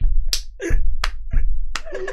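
Three loud hand slaps, about two-thirds of a second apart, each with a heavy thud, amid hearty laughter.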